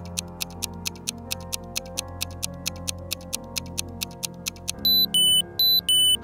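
Time-passing sound effect: rapid clock ticking, about five ticks a second, over a sustained musical chord, then loud repeated high-pitched alarm beeps near the end.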